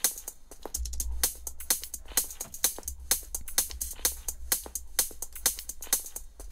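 Minimal/deep tech loop playing back: dense electronic hi-hats and percussion ticking over a sub-bass that comes in about a second in. The hats are run through a Saturn modulation return whose automation is rising, so they are starting to glitch out.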